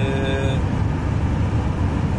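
Steady road and engine rumble inside a camper van's cab driving at highway speed.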